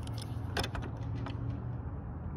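A few sharp metal clicks and clinks from a ratchet wrench and extension being fitted onto a headlight mounting bolt, over a steady low hum.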